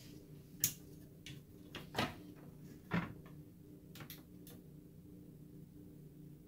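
Gigabyte GA-EX58-UD5 motherboard and power supply power cycling, switching on then straight off again: a sharp click roughly every second over a steady low hum. The repeated cycling is the board's fault, which the owner later traces to a corrupt BIOS.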